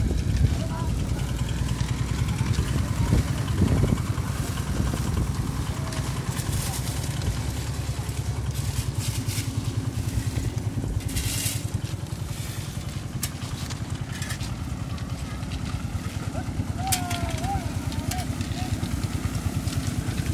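Concrete mixer's engine running steadily with an even, fast pulse, with a few brief scrapes of shovels in crushed stone chips.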